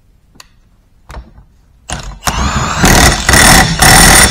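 Milwaukee M18 FUEL cordless impact wrench running the piston nut down onto a hydraulic cylinder rod. A few light clicks come first, then the motor spins up about two seconds in, and rapid loud hammering follows in two or three bursts as the nut tightens.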